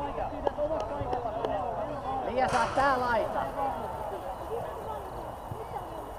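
Young players' high voices calling and shouting across a football pitch, with one louder call about two and a half seconds in, over a low wind rumble on the microphone.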